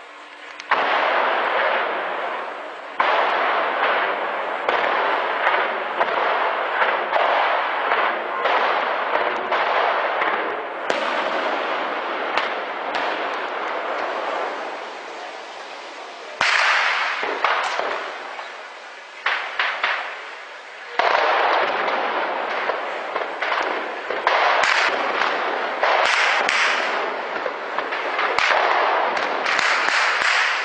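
Sustained heavy gunfire: dense crackling volleys of shots with echoes, surging suddenly several times and tailing off between surges.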